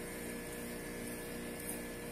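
A steady machine hum with a faint high whine, even and unchanging throughout.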